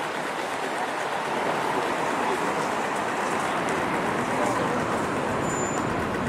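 Busy city-street ambience: a steady wash of traffic noise with the voices of passers-by crossing the road.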